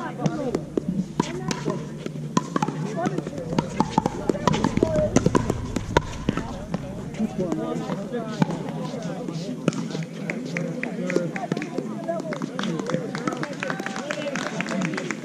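Indistinct voices talking, crossed by repeated sharp pops of pickleball paddles hitting the hard plastic ball.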